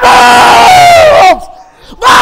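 A man's long, very loud celebratory shout of "¡Bomba! ¡Vamos!" as a penalty goal goes in, falling in pitch as it breaks off just over a second in; a second shout starts right at the end.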